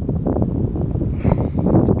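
Wind buffeting the camera's microphone, a continuous low rumble.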